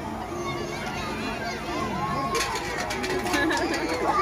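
Crowd of children chattering and calling out, several voices overlapping, with a few sharp clicks about halfway through.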